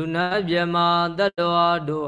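A Buddhist monk chanting Pali verses in a single male voice, holding long, steady notes with a few steps in pitch and a short breath break partway through.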